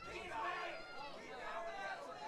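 Overlapping voices of a fight crowd, shouting and chattering.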